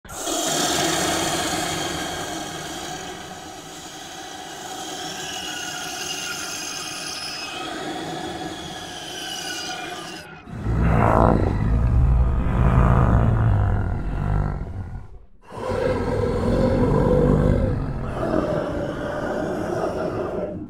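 Cinematic intro sound design: for about ten seconds, a layered bed of held tones that drift slowly in pitch. Then a sudden loud, deep rumble hits, drops out briefly around fifteen seconds, and swells back up.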